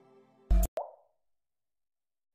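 Intro sound effect: the end of soft ambient music fades out, then a sharp hit about half a second in, followed by a second shorter pop with a brief ringing tail.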